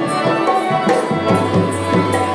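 Harmonium and dholak playing a Rajasthani folk tune: held reedy chords under a brisk, even pattern of hand-drum strokes, about three to four a second.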